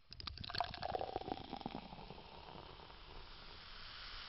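Liquid pouring and bubbling, with small clicks in the first second, settling into a steady hiss that slowly fades.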